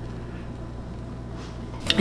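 Steady low hum of room tone with quiet sipping from a ceramic coffee mug; near the end the mug is set down on the stone counter with a short clunk.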